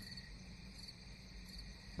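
Faint steady background noise, with thin high-pitched tones held level and a low hum underneath.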